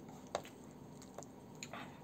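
Faint, close-miked wet eating sounds: a few short soft squishing clicks, about four over two seconds, from chewing and from fingers working sauced vegetables.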